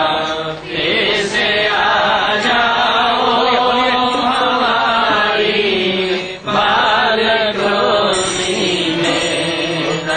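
Devotional Hindu chanting (kirtan): voices singing continuously, with a short break about six seconds in.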